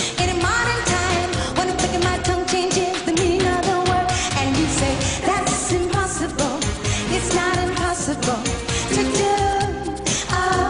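Live pop song: a woman singing lead over a band backing with a steady, driving drum beat.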